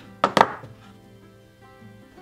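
Multi-prong stitching chisel driven through layered leather by two quick strikes, probably from a mallet, shortly after the start, each a sharp knock, punching the stitch holes along the sheath's edge. Quiet background music follows.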